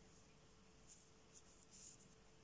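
Near silence: a few faint, soft scratches and light ticks of knitting needles and cotton yarn as stitches are worked, over a faint steady hum.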